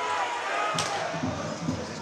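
Ice hockey arena crowd murmur, with one sharp knock on the ice a little under a second in.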